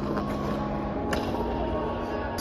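Ice rink room sound: a steady hiss and hum, with skate blades running on the ice and one sharp click about a second in.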